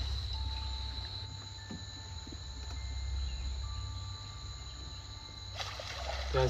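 Low, steady rumble under faint thin tones. Near the end, water splashes as a silverback gorilla wades through a shallow stream.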